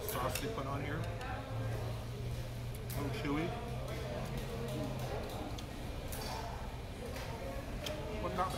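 Restaurant dining-room background: faint voices in conversation over a steady low hum, with a few light clicks.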